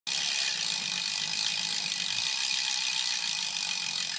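Bicycle freewheel hub ticking rapidly and steadily as the rear wheel spins freely.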